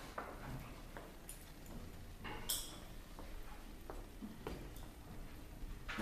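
Quiet room with a few light clicks and knocks, the sharpest about two and a half seconds in.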